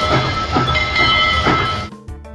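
Steam-train chugging sound effect played by the Fisher-Price Little People toy train after its light-up smokestack button is pressed. It chuffs about twice a second, with a steady high whistle-like tone over it.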